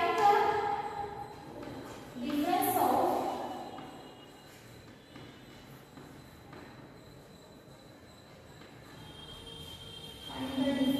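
A woman speaks briefly at the start and again around three seconds in. Then chalk scrapes and taps faintly on a blackboard as words are written.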